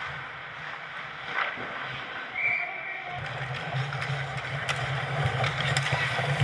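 Ice hockey play on a rink: skates scraping the ice and sticks and puck clacking, growing louder after about three seconds, with a few sharp clacks near the end and a brief high tone about two and a half seconds in.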